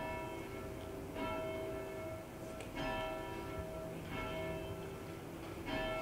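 A church bell tolling slowly, one stroke about every one and a half seconds, each stroke ringing on into the next.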